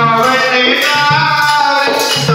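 Hindi devotional bhajan to Shiva, a melody sung over instrumental accompaniment, playing continuously.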